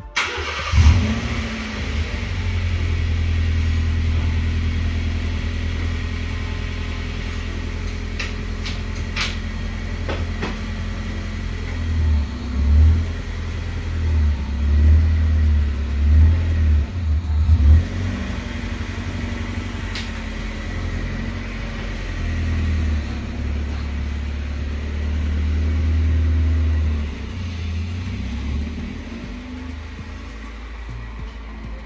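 Honda Civic hatchback's four-cylinder engine starting just under a second in, then running steadily as the car is reversed away. Its speed rises and falls several times in the middle, with another rise near the end.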